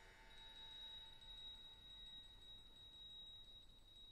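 A very quiet passage of orchestral music: the last ringing notes of a plucked and struck passage die away, and a single faint, high note is held steady.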